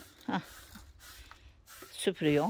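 Faint brushing of a stiff broom over a concrete path, with a few light scrapes and taps, broken just after the start by a short spoken "hah".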